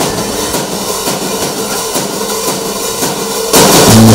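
Rock band music: a noisy stretch with drums, then the full band with electric guitar comes in loudly about three and a half seconds in.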